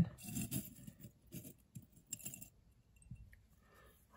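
Small metal eyelets clinking against each other and the jar lid as fingers pick through them, a scatter of light clicks over the first couple of seconds that then fades.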